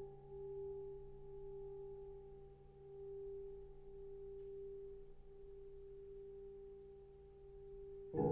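Piano notes left ringing after being struck and slowly dying away. One mid-range tone stands out clearly above fainter higher and lower ones, swelling and fading slowly as it decays.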